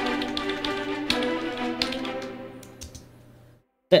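Orchestral string cue playing back from a Pro Tools session: sustained string chords with a few short taps over them. It plays cleanly, with no dropouts, then fades and stops dead just before the end.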